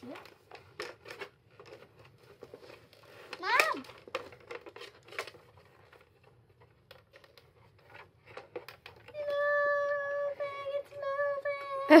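Light clicks and taps of plastic toy pieces being handled, with a child's rising vocal squeal about three and a half seconds in and a child humming one steady note for the last three seconds.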